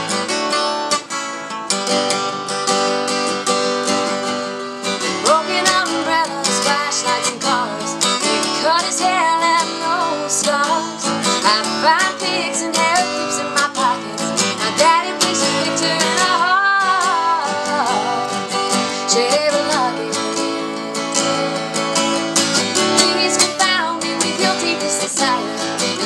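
Acoustic guitar strummed steadily, with a wavering melody line laid over it from about five seconds in.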